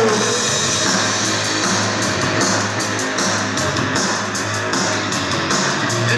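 Goth/post-punk band playing live: bass guitar, electric guitar and drums, with a steady bass line under regular drum strokes.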